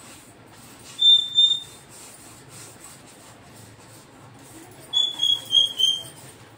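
Dishes being washed by hand at a sink: a wet vessel squeaking as it is rubbed, two short high squeaks about a second in and four quick ones near the end.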